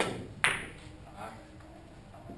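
Two sharp clacks of Russian billiard balls striking, about half a second apart, the second louder with a brief ring.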